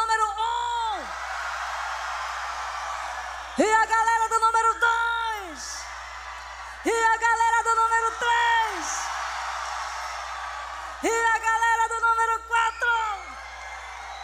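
A person's voice giving a series of long, loud held cries, four in all, about every three to four seconds. Each holds a steady high pitch and then drops away at the end, with steady crowd noise between them.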